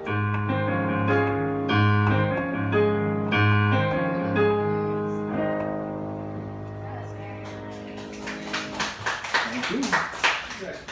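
Digital stage piano playing the closing chords of a song, the last chord left ringing and fading. Scattered clapping starts near the end.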